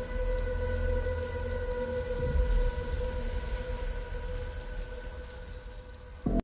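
A steady, held drone tone over a low rumble, slowly fading away.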